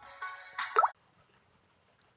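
The tail of a short intro jingle, ending about three-quarters of a second in on a quick rising plop-like sound effect.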